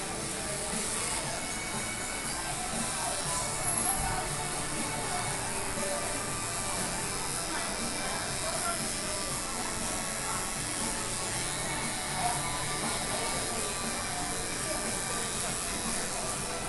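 Electric hair clippers buzzing as they cut a short haircut around the ear, heard under steady background music and voices.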